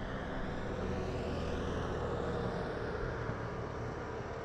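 Steady outdoor background of distant motor noise: an even rumble and hiss with a low hum underneath, no sharp events.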